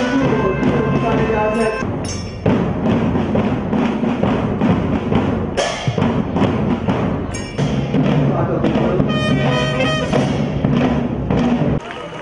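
School marching drum band of bass and snare drums playing a beat with a tune over it. The music drops away suddenly just before the end.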